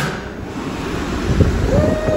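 Wind buffeting a phone microphone outdoors, a rough low rumbling noise, opened by a sharp click. Near the end a steady tone sets in and holds.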